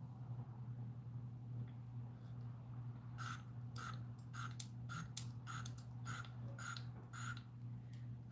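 Perfume atomizer pumped in a quick run of about nine short sprays, roughly two a second, starting about three seconds in, as when decanting perfume into a sample vial. A steady low electrical hum sits underneath.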